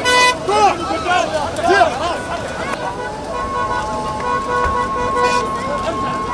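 Vehicle horns in a motorcade: a short toot at the start, then a horn held steady from about halfway through. Voices from a crowd shout over them.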